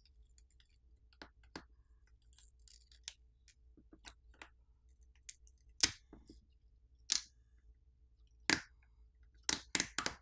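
Scattered small crackles and clicks of flexible ribbon cables being peeled off their adhesive inside a smartphone, with a few sharper ticks in the second half.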